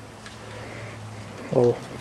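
A pause holding only a faint steady low hum and hiss, then a man's voice about one and a half seconds in. The engine is not running.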